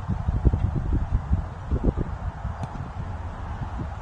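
Wind buffeting the phone's microphone: irregular low rumbling gusts with a faint hiss.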